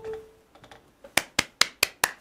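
A smartphone's short charging chime as it starts charging on a wireless charger stand, followed about a second later by four sharp taps about a fifth of a second apart.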